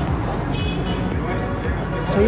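Road traffic noise mixed with background music.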